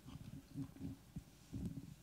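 Handling noise from a handheld microphone being passed from one person to another: faint, irregular low, muffled bumps and rubbing, with one sharper knock about a second in.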